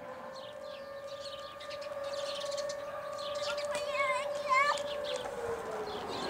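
An outdoor siren holding one steady pitch for several seconds, then winding down with its pitch falling near the end.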